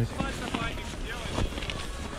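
Faint, distant talk over a low wind rumble on the microphone.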